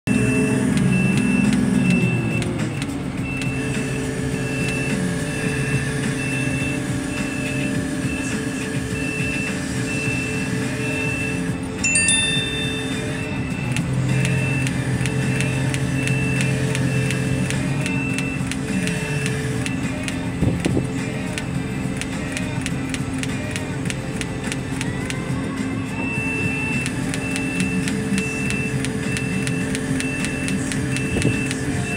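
Heavy machinery running with a steady low drone that drops near the start and swells a little past the middle, under a high warning beep repeating in a regular on-off pattern. The beeping pauses twice, and a short rising squeal sounds about twelve seconds in.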